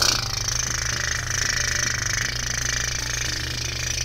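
Steady rushing roar of a rocket-launch sound effect, starting suddenly, laid over low background music.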